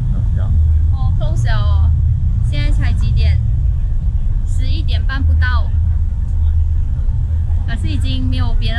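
A loud, steady low rumble of outdoor street noise, with a woman's voice in a few short remarks over it.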